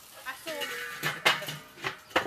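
Metal clanks from a charcoal kettle grill as its lid is put back on: several sharp knocks, the loudest a little past a second in and another near the end. A short burst of a woman's voice comes just before them.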